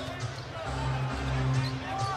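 Basketball arena sound: a ball being dribbled on the hardwood court over a low, pulsing bass line of arena music.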